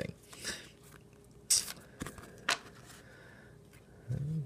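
Trading cards being handled and put down: a short papery swish of card stock about one and a half seconds in, then a couple of light clicks.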